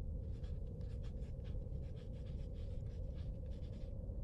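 Pen scratching on paper in quick, irregular strokes, faint over a steady low hum.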